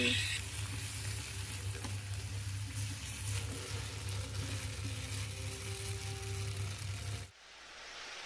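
A stir-fry of green beans, rice vermicelli and tofu sizzling in a non-stick pan while a wooden spatula stirs it, over a steady low hum. The sizzle cuts off abruptly near the end.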